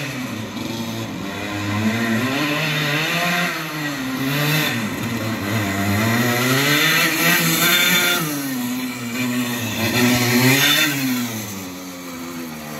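Go-kart engine revving up and dropping back again and again as the kart accelerates and slows between slalom cones. Its pitch climbs and falls several times and is loudest in the second half.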